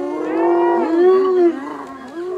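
Spotted hyenas calling as they face a lion: several overlapping drawn-out calls, one held steady and others rising and falling in pitch, easing off about three quarters of the way through.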